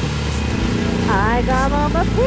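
A woman's high, sing-song voice starts about a second in, gliding down then up and then holding a note, over a steady low outdoor rumble.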